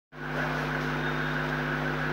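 Steady electrical hum with an even background hiss, starting a moment in and holding unchanged.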